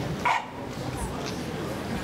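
Murmur of an outdoor crowd, with one short sharp cry, like a yelp or bark, a quarter of a second in; that cry is the loudest sound.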